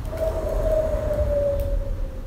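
A single held tone that falls slightly in pitch and lasts about two seconds: the 'singing' of the singing expanding ball as the sphere collapses.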